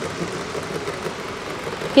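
Steady background din without speech, ending in a short laugh.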